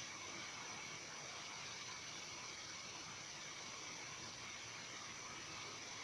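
Faint, steady hiss of recording background noise with thin high steady tones and no events.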